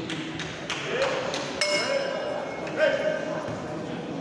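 A bell struck once to start the round, ringing briefly over voices in the hall, with a few sharp knocks just before it.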